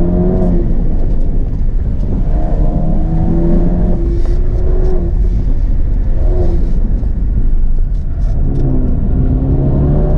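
Ford Focus ST's turbocharged four-cylinder engine, heard from inside the cabin, pulling hard and easing off in turn during an autocross run, with road and tyre noise underneath. Its note holds at the start, falls away, comes back about two and a half seconds in and holds to about the halfway point, drops again, returns briefly, and climbs once more near the end.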